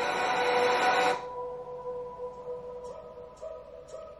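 Film trailer soundtrack: a held chord of steady tones under a rushing swell that cuts off suddenly about a second in, leaving a faint sustained tone with a few soft clicks.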